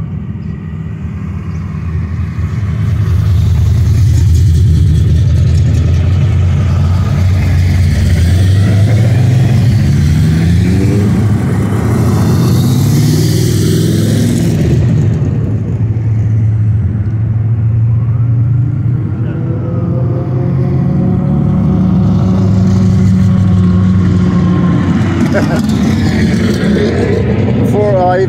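Modified cruise cars' engines rumbling continuously as they roll past. One car revs up with a rising pitch about a third of the way in, and there is a louder, rougher pass around the middle. Another rise in engine pitch comes near the end. The engine just passing has a cammed sound, which the onlooker picks out.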